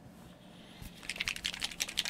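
A paint dropper bottle being shaken by hand: a quick, rapid clicking rattle that starts about a second in.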